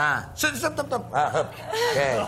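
People chuckling and laughing in short spurts, with scraps of voice.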